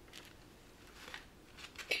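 Faint rustling and a few soft clicks as a beaded cross-stitch piece on plastic canvas is handled and lifted.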